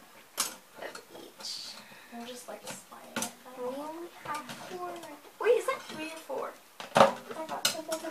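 Metal silverware and cups clinking against each other and a stainless steel sink as they are washed by hand: a few sharp clinks, the loudest one near the end.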